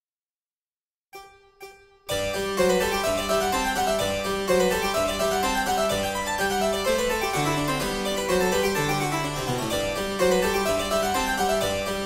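Two count-in clicks half a second apart, then a harpsichord accompaniment starts a brisk baroque Presto in G major, playing the bass and chords without the solo flute part.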